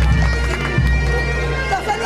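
Bagpipes playing, their steady drones held under the tune, with people's voices mixed in.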